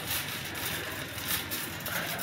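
Wire shopping cart being pushed across wet asphalt: the steady rolling noise of its wheels on the pavement.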